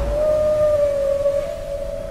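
Humpback whale call: one long, steady tone that steps slightly up in pitch about one and a half seconds in.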